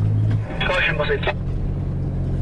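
Steady engine drone of a 4x4 heard from inside its cabin while driving over sand dunes, its pitch shifting slightly about half a second in. A short burst of voice cuts in briefly near the start.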